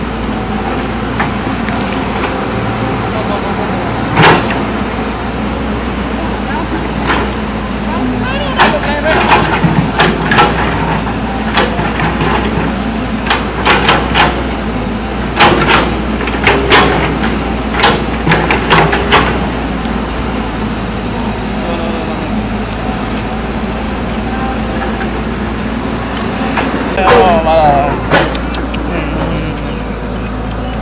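Hydraulic excavator's diesel engine running steadily close by, with a string of sharp knocks and clanks in the middle stretch as the bucket works through dirt and broken concrete. A short voice exclamation comes near the end.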